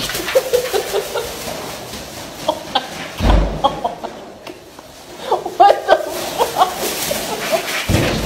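A person making short, clucking laughs and vocal noises, thickest in the second half, over the crinkle of a plastic shopping bag being dragged across carpet. A dull bump comes about three seconds in.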